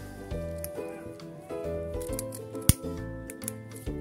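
A lighter clicks once, sharply, about two and a half seconds in, with a few fainter clicks around it, as it is struck to burn off a polyester yarn end. Background music plays throughout.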